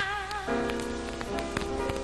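Theme music: a sung phrase ends, and about half a second in, held instrumental chords come in with scattered light ticks over them.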